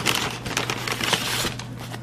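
Paper and cardboard fast-food packaging crinkling and rustling as it is handled, a dense run of crackles that stops about a second and a half in.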